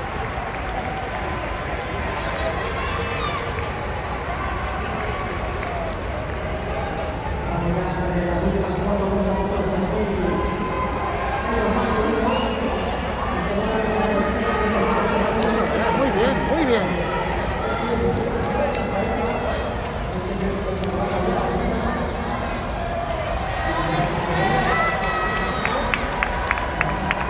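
Spectators' voices in an indoor athletics hall, many people talking and calling out at once. Near the end a run of quick, even claps begins.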